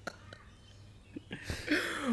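Mostly quiet room with a faint low hum and a few soft clicks, then, about a second and a half in, a man's breathy, half-whispered laughing exhale that leads into speech.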